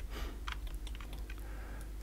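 Faint, irregular clicks of a computer mouse and keyboard: scroll-wheel notches, button presses and the Shift key while navigating a 3D viewport.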